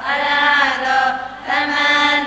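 A group of women chanting Buddhist Pali verses in unison, in slow, drawn-out melodic phrases. One phrase ends and the next begins about one and a half seconds in.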